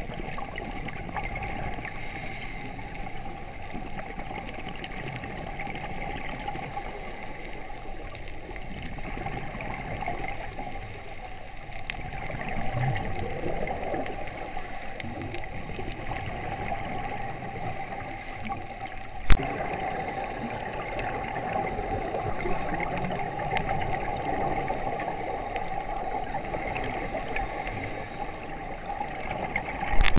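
Underwater ambience heard through a camera's waterproof housing: a steady, muffled water noise with gurgling from scuba divers' exhaled bubbles, and one sharp click about 19 seconds in.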